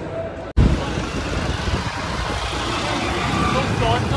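Road traffic heard from a moving open vehicle at night: a steady rumble of engines and road noise, heaviest in the low end. It begins abruptly about half a second in, after a moment of quiet indoor room tone.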